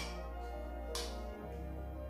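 Background music, steady and soft, with one light click about a second in.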